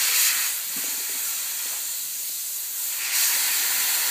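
Steady hiss of compressed air escaping from an experimental 4R Blockhead air-bearing spindle and its air supply line. The hiss grows a little brighter about three seconds in.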